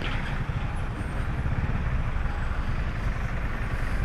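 Steady low engine rumble in slow, jammed traffic: a Honda Pop 110i's small single-cylinder four-stroke running at low speed, close beside an idling city bus.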